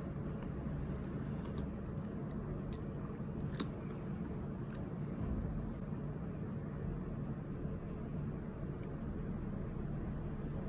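Quiet room tone: a steady low hum, with a few faint light clicks in the first half.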